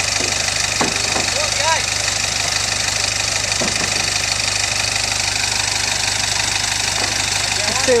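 Engine of a loaded overland 4x4 running steadily at low speed with a rapid, even beat as the vehicle creeps across loose wooden planks. Brief faint voices come in a few times.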